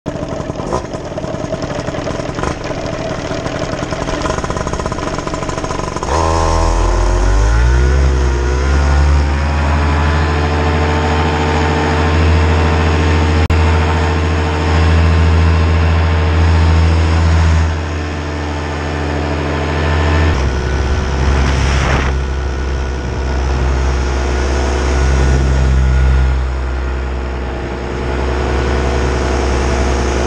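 Paramotor engine and propeller running at low throttle, then opened up about six seconds in, its pitch climbing over a few seconds to a steady full-power drone for the launch. The tone shifts abruptly about twenty seconds in as the engine keeps running hard.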